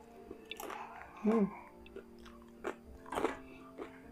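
Close-up mouth sounds of chewing a piece of crispy fried chicken: wet chewing broken by several short crunchy bites. A short closed-mouth 'hmm' comes about a second in.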